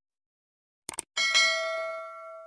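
Two quick clicks just before a second in, then a bright bell ding that rings on in several clear tones and slowly fades. This is the sound effect of a subscribe-button animation clicking the notification bell.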